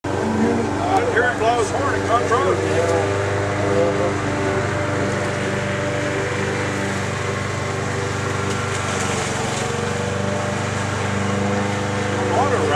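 Steady drone of a CSX SD70MAC diesel-electric locomotive's EMD 710 two-stroke V16 as it approaches slowly. A person's voice is heard over it in the first few seconds.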